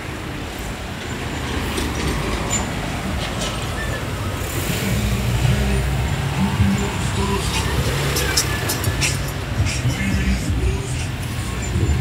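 Road traffic: cars and a pickup truck driving past close by, a steady rumble of engines and tyres that is heaviest from about four to ten seconds in.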